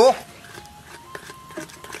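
Metal spoon stirring a runny garlic-chili oil sauce in a stainless steel bowl, with small, scattered clinks and scrapes of the spoon against the bowl. Faint background music plays under it.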